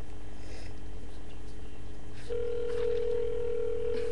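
Ringback tone from a cell phone's speaker: the number being called is ringing and has not been answered yet. One steady two-second ring tone starts a little over halfway through, in the phone network's cadence of two seconds on and four off.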